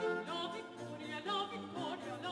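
A woman singing a baroque operatic line with vibrato, accompanied by a small instrumental ensemble holding low sustained notes.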